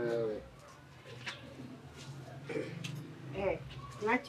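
A voice trails off, then faint outdoor background with a bird cooing softly a couple of times in the second half.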